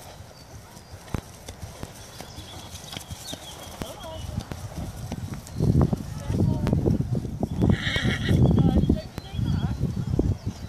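A horse trotting on grass, its hooves thudding dully. The hoofbeats grow much louder about halfway through as the horse passes close.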